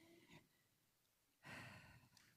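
Mostly near silence, with a faint breathy exhale into a close microphone about one and a half seconds in, lasting about half a second.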